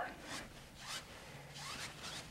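A wide bristle brush scrubbing and blending oil paint on a canvas in several quick back-and-forth strokes, a dry scratchy swishing.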